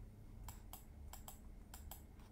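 Faint clicks of a computer being operated, about six in all, several of them coming in quick pairs.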